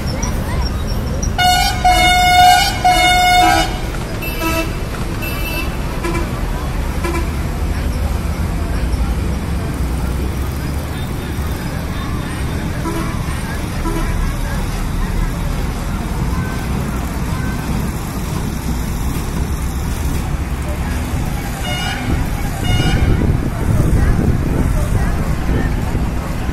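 Vehicle horn honking: one long blast starting about a second and a half in and lasting about two seconds, then two short toots a few seconds later. Under it runs a steady low rumble of road and crowd noise.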